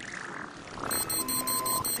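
Animated-film soundtrack music, joined about halfway through by a rapid, evenly repeating high-pitched electronic pulsing, about nine pulses a second, with a brief steady tone under it.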